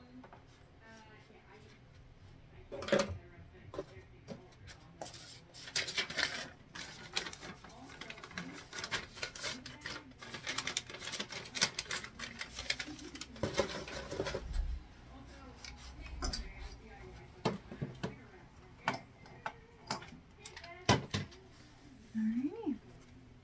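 Small hard objects being picked up, handled and set down while tidying a room: irregular clicks, knocks and light clatter, busiest in the middle stretch.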